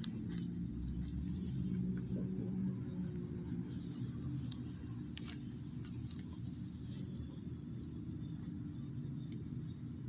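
Steady high-pitched trill of crickets over a low background rumble, with a few faint clicks in the first half.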